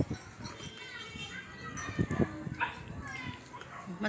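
Faint voices of children playing and calling out across the neighbourhood.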